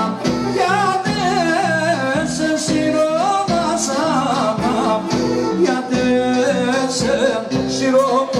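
Live male vocalist singing an ornamented, wavering melody into a microphone, with amplified keyboard accompaniment and a pulsing bass line, played loud over a PA.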